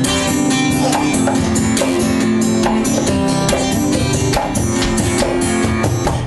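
Acoustic guitar strummed in a steady rhythm with percussive strokes, playing the instrumental intro of a song before the vocals come in.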